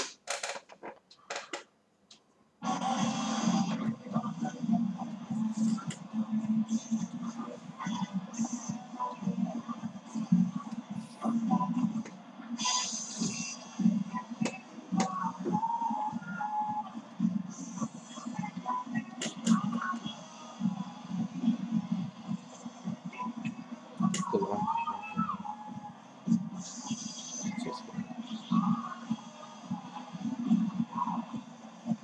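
Sound of a tennis broadcast playing through a TV's speaker: indistinct voices and music. It comes on after about two and a half seconds of near silence broken by a few clicks.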